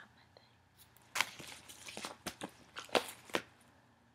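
Paper and packaging being handled: about half a dozen short rustles and crinkles, starting about a second in.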